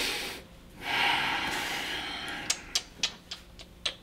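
A person's loud, breathy exhale lasting over a second, followed by a quick, irregular run of about seven sharp clicks.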